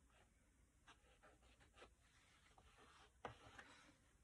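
Near silence with faint paper rustles and a few soft ticks as journal pages are handled.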